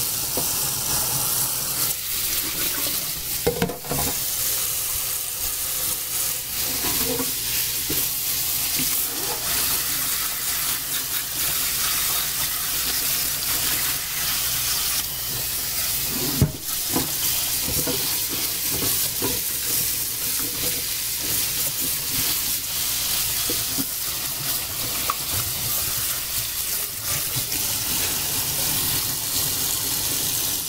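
Kitchen tap running in a steady stream into a stainless steel sink and over asparagus in a steamer pot, rinsing it. Two sharp knocks come about three and a half seconds in and about sixteen seconds in.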